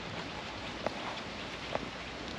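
Steady faint outdoor hiss, with two small clicks as a Jack Russell puppy nibbles bits of treat from the fingers.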